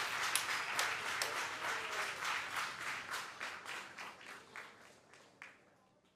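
Applause from a group of people, dense clapping that gradually dies away over about five seconds.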